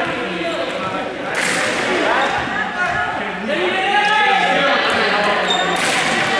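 Several young people's voices calling and shouting over one another in an echoing sports hall, with a couple of knocks, one about a second and a half in and one near the end.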